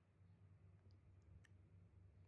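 Near silence: a faint low hum with a few tiny, faint clicks about a second in.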